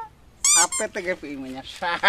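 A short, high-pitched vocal squeal from a man about half a second in, followed by his ordinary speech.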